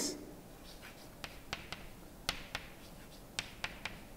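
Chalk writing on a blackboard: a string of about nine sharp taps and short strokes, coming in small groups as each letter is formed.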